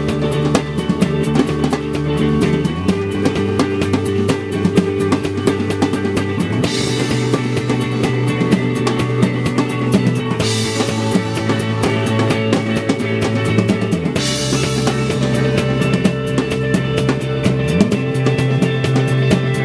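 Rock band playing an instrumental passage, with drum kit, bass guitar and electric guitar. The drums keep a steady driving beat, and the bass holds each note for about four seconds before moving on. From about seven seconds in, a cymbal crash opens each new bass note.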